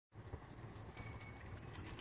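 Faint outdoor ambience with a few brief, high bird chirps.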